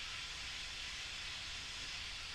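Steady, even hiss with a faint low rumble underneath: the background noise of the recording, with nothing else sounding.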